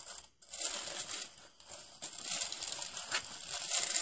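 Tissue paper and shredded paper filler in a cardboard subscription box crinkling as they are pulled back by hand, in bursts with a short pause just after the start.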